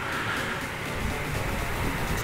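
Riding noise from a Yamaha MT-09: the three-cylinder engine running steadily at road speed under an even rush of wind on the microphone.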